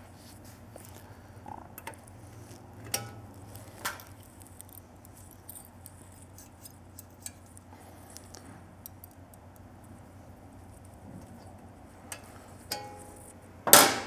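Exhaust header springs being stretched with a spring puller and hooked onto the pipe joints. A few light metallic clicks and clinks, the sharpest about three and four seconds in and another near the end.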